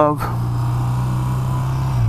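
BMW Airhead air-cooled boxer-twin motorcycle engine running at a steady, even speed while riding, a constant low hum with light wind noise over it.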